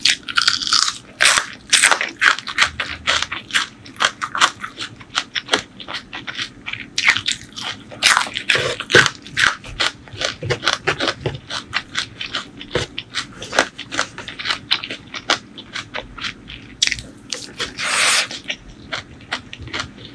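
Close-miked crunchy chewing and biting: a dense run of sharp crunches as raw vegetable and crisp food are chewed, with one longer noisy sound near the end.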